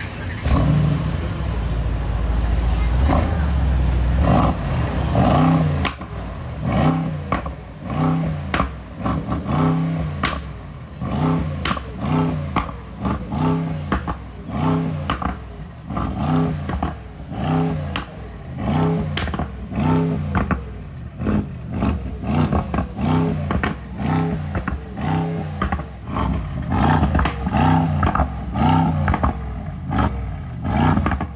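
Mercedes-AMG GT's twin-turbo 4.0-litre V8 heard through its quad exhaust, running low and steady for the first few seconds, then revved in short blips about once a second.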